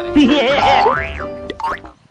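Short comic sound-effect sting: a burst of music with a boing, and a whistle-like tone that slides up and back down about halfway through, then another quick upward slide near the end.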